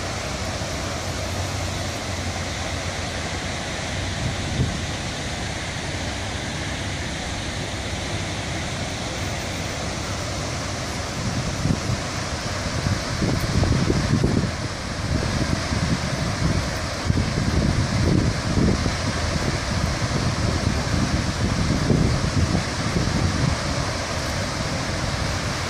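A dam's rooster-tail discharge: a jet of water thrown high into the air and falling into the river makes a steady, loud rush of falling water and spray. From about halfway through, uneven gusts of wind buffet the microphone.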